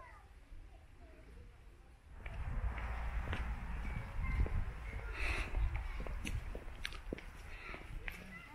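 Low rumbling noise on a handheld camera's microphone as it is swung and carried along, starting suddenly about two seconds in, with a few light ticks and faint distant voices.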